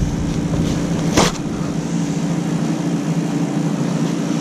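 Paper towel rustling as it is handled, with one short, sharp rustle about a second in, over a steady low hum.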